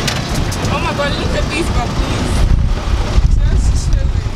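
Low rumble of a moving vehicle with wind buffeting the microphone, and faint voices in the first couple of seconds.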